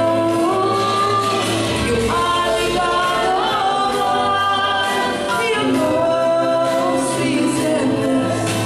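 A small mixed group of women and a man singing a worship song together into microphones, over instrumental backing with steady low bass notes and a light regular beat.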